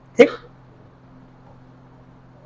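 A man's voice saying one short word ("theek", okay), then a faint low steady hum.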